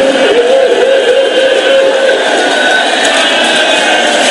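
A man's voice chanting a long, wavering held note of lament through a loud public-address system.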